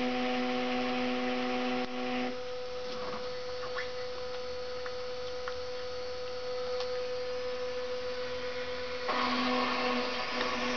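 Samsung front-loading washing machine running: the motor's steady pitched hum turning the drum stops about two seconds in, leaving a softer hum with a few light clicks, and starts up again about a second before the end.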